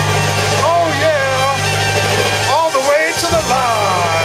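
A band holds one low note at the end of a song while voices whoop and call over it.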